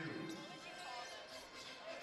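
Faint basketball arena sound during live play: distant crowd voices with a basketball bouncing on the hardwood court.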